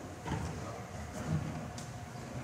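Plastic bucket drums being handled and set down on a wooden stage, giving a few dull knocks and scrapes, the loudest about a second and a half in.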